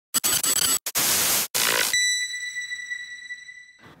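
Logo intro sound effect: three bursts of static-like noise broken by brief dropouts, then a single high bell-like ding just before halfway that rings and slowly fades.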